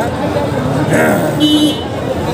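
A vehicle horn gives one short, steady toot about one and a half seconds in, under men talking.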